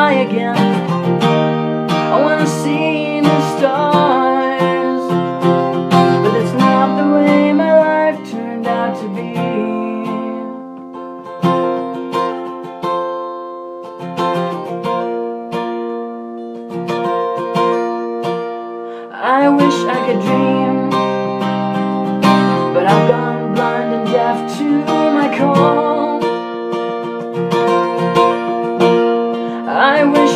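Acoustic guitar being strummed through a song's chords. The playing drops softer about eight seconds in and picks up again about nineteen seconds in.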